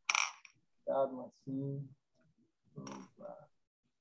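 A few short voice sounds heard through a video call: a brief breathy burst at the start, then three or four short voiced exclamations about a second apart, each cut off into dead silence by the call's audio.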